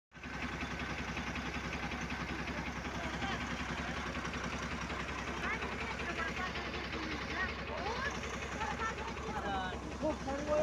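A Tata bus's diesel engine idling steadily with an even low pulse. Voices talk faintly from about halfway on.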